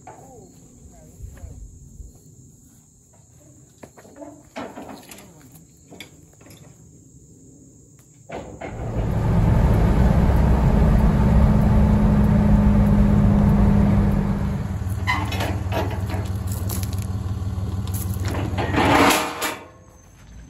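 Faint outdoor sounds with a few scattered clicks and knocks, then, a little before halfway, steady loud engine and road drone heard inside a vehicle's cabin at highway speed. The drone eases somewhat partway through, has a few knocks and rattles in its last seconds, and cuts off just before the end.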